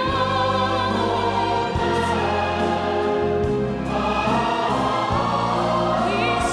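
Choir singing with an orchestra, holding long chords in a slow passage of a Christmas song, with a change of chord about two-thirds of the way through.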